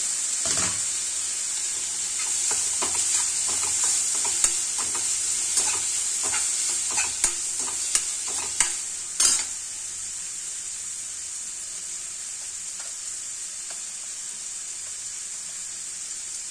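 Onion-tomato masala frying in oil in a steel kadai, with a steady sizzle throughout. For the first nine seconds or so, a metal slotted spoon scrapes and clinks against the pan as the masala is stirred. After that the sizzle goes on alone.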